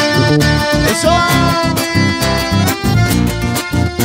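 Live band playing upbeat Latin dance music: accordion and guitar over a steady bass-driven beat.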